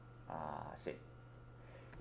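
One short spoken word over quiet room tone with a faint, steady low hum.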